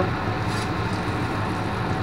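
Steady background hum and hiss with no distinct events.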